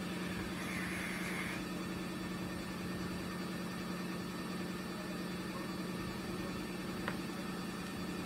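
Washing machine running in the background: a steady low hum. About a second in, a brief soft hiss as a vape is drawn on.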